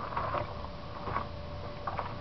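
A few faint knocks and shuffles of a person moving about and handling a plastic gas can, over a low, steady outdoor background noise.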